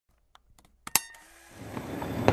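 A few faint clicks, then a sharp, louder click with a brief ring just under a second in. A soft hiss of background noise then swells up.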